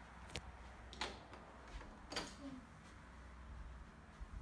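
Three separate sharp clicks or knocks, roughly a second apart, the middle and last the loudest, over faint room tone.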